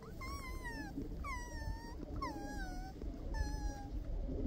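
Mule deer fawn bleating: four drawn-out calls about a second apart, each falling in pitch.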